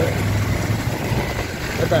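Vehicle engine running with a steady low rumble, heard from on board while moving.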